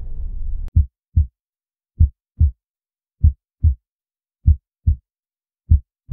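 Heartbeat sound effect: slow, low double thumps (lub-dub), one pair about every 1.2 seconds, repeating steadily with silence between. In the first moment a low rumble dies away and ends in a sharp click before the beats begin.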